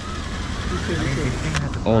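Cordless drill backing out a panel screw, its faint whine rising in pitch, over a steady low hum of running rooftop equipment.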